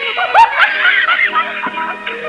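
Two men laughing hard together on an old film soundtrack, in short peals that rise and fall in pitch.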